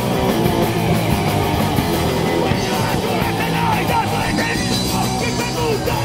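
A band playing loud, fast punk/metal live, with distorted guitars and drums, recorded from among the crowd.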